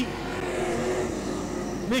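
Engines of AMCA Nationals speedway sedans running on a dirt oval, a steady blended engine sound with faint held tones.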